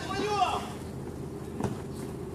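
A player's shout on the pitch in the first half second, then a single sharp knock about one and a half seconds in, a football being kicked, over a steady low hum.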